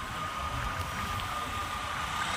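Roadside traffic noise: a steady low rumble and hiss as an auto-rickshaw approaches on the road, with a thin steady high whine running through it.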